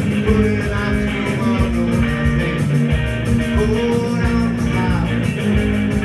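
Live rock band playing loud: electric bass, electric guitar and drum kit with a steady beat, and a man singing into a microphone.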